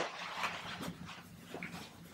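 Faint, irregular rustling of the vinyl vacuum splint and its webbing straps as they are handled and adjusted.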